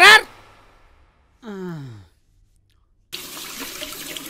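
A short vocal sound falling in pitch about one and a half seconds in, then, from about three seconds in, a tap running steadily into a ceramic washbasin.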